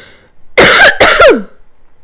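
A woman coughing twice in quick succession, behind her hand.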